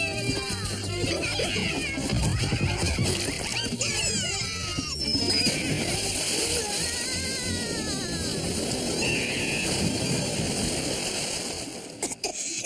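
Cartoon soundtrack music with splashing water sound effects as a large splash hits a pond.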